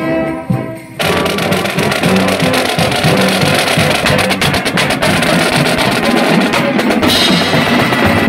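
A marching band's brass section finishes a held phrase in the first second. The drumline then comes in with a loud, steady drum beat on snare drums and marching bass drums.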